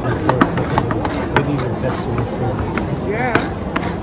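Metal spatulas chopping and scraping on a frozen steel plate as rolled ice cream is worked, a sharp irregular clack every few tenths of a second, over crowd chatter.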